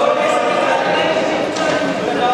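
Many overlapping voices of spectators and cornermen talking and calling out, echoing in a large sports hall, with thumps from the bout on the mats.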